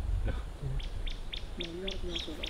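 A bird repeating a short, high chirp about four times a second, starting just under a second in, over a steady low rumble.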